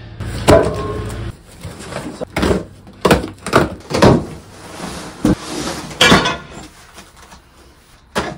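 A large cardboard shipping box being handled and unpacked on a concrete floor: a string of thumps, knocks and scrapes as the box is tipped, slid and opened and the metal parts inside shift. The loudest knocks come about half a second in and about six seconds in.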